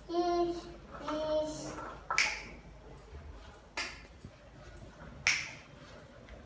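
A young child's two brief held vocal sounds, then three sharp clicks about a second and a half apart.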